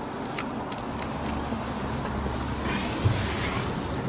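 A large old newspaper being handled, with a few faint clicks and a soft rustle of the paper, over a steady low rumble and one short thump about three seconds in.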